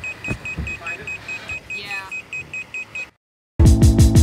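Boat electronics alarm beeping rapidly and evenly, about four high-pitched beeps a second. It cuts off sharply about three seconds in, and music starts shortly before the end.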